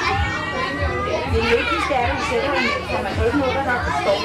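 A crowd of children's voices chattering and calling over one another.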